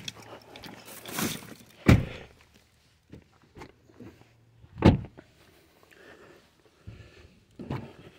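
Car doors being shut: two solid thuds about three seconds apart, with light rustling and small clicks around them.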